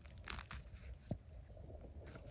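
Faint rustling and crackling with a few small snaps, from forest-floor litter being disturbed.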